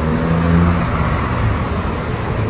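Street traffic: a motor vehicle's engine running close by, a low steady hum that drops in pitch about a second in, over a haze of road noise.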